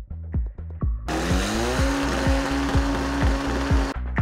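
A racing car engine at full throttle, its pitch rising and then holding steady at high revs, comes in about a second in over an electronic dance track with a steady beat, and cuts off abruptly just before the end.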